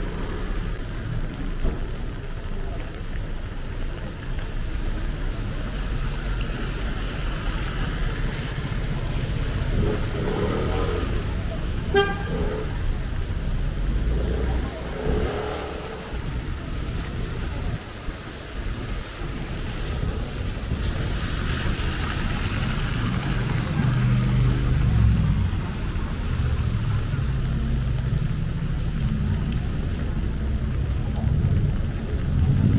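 Rain and traffic on a wet city street: a steady hiss of rain and tyres on wet pavement with low engine rumble, and one short car-horn toot about twelve seconds in. The low rumble swells near the end as a vehicle passes close.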